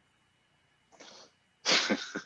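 A man's laugh starting: a faint breath about a second in, then a sudden loud burst of breath near the end.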